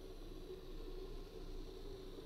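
Ozobot robot's tiny drive motors whirring faintly as it drives across the table, a steady low whine that wavers a little in pitch.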